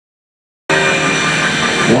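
Stearman biplane's radial engine and propeller droning steadily overhead, cutting in suddenly about two-thirds of a second in.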